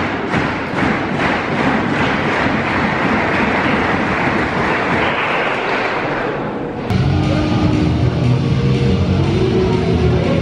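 Loud arena crowd noise, heard from behind the entrance curtain, swelling and then easing. About seven seconds in it cuts off suddenly and is replaced by music with steady held notes.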